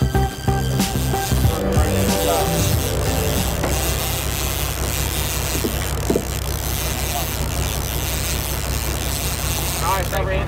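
Background music fades out over the first two seconds. It gives way to the steady low rumble of a fishing boat with wind and water noise, and faint voices.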